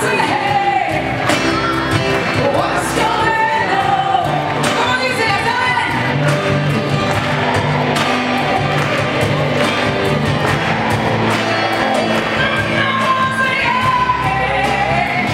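Live acoustic pop band: a woman singing lead over acoustic guitar and bass, heard from the audience with the echo of a large theatre hall.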